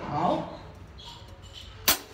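A brief bit of speech trails off, then a pause, then a single sharp drumstick click near the end: the first beat of a drummer's count-in before playing the drum kit.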